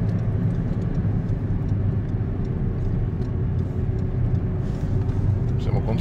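Ford Ka+ 1.2-litre petrol engine and road noise heard from inside the cabin while driving, a steady low rumble with no revving.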